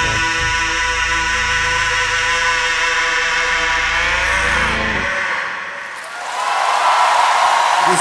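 A rock band and symphony orchestra hold a final chord, with the singer sustaining a last note, until it stops about five seconds in. About a second later audience applause starts and swells.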